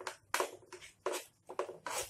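A steel spoon scraping against a non-stick frying pan as scrambling eggs are stirred slowly and broken into pieces, about five short scrapes.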